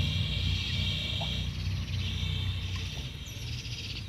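An insect trilling in a high, fast-pulsing buzz in two long stretches, with a short break about a second and a half in, over a steady low rumble.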